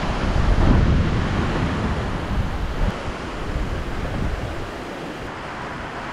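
Heavy rain and gusting wind, with the wind buffeting the microphone; the gusts are strongest in the first couple of seconds and then ease a little.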